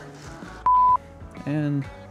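A single short electronic beep: one steady pure tone, about a third of a second long, starting and stopping abruptly.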